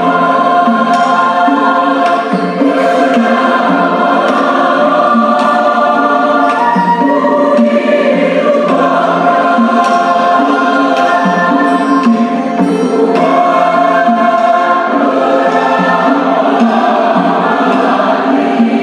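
A choir singing a hymn in sustained, full chords.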